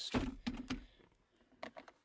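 Hard plastic knocks and clicks from a 2005 Ford Mondeo's rear centre armrest and its storage lid being handled: a cluster of knocks in the first second, then a few quick clicks near the end.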